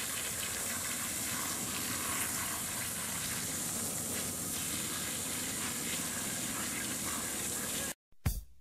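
Water from a garden hose spray nozzle pouring over a person's head and splashing onto concrete, a steady hiss of running water that cuts off suddenly near the end.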